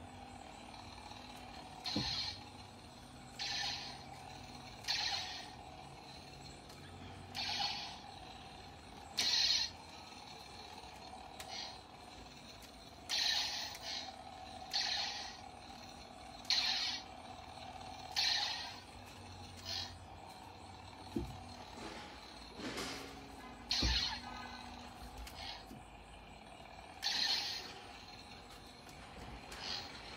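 Toy lightsaber humming steadily, with a short hissing swing sound every one to three seconds as it is swung through the air.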